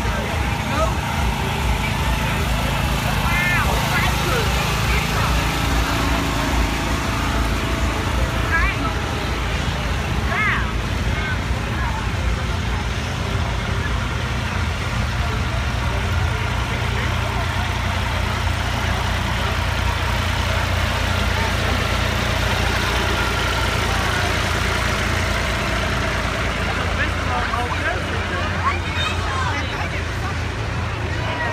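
Slow-moving tractor and road-train engines, a steady low rumble as the parade vehicles pass one after another, with the voices of onlookers over it.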